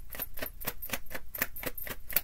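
Tarot deck being shuffled by hand: a quick, even run of card clicks, about seven a second.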